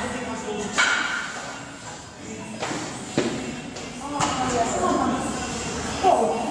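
Voices talking in the background of a gym, with three sharp knocks: about a second in, about three seconds in and about four seconds in.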